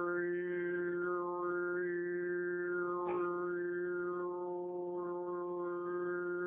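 Tuvan sygyt throat singing: one man holds a steady low drone while a whistling overtone melody rises and falls above it in several arching phrases.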